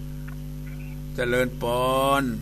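Steady electrical mains hum, several low tones held without change. A voice starts speaking a little over a second in and is louder than the hum.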